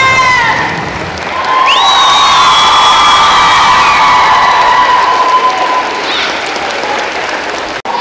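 The held final note of a sung song slides down and ends just after the start, then an audience applauds and cheers, with one long high-pitched cheer from about two seconds in to about five. The sound breaks off briefly near the end.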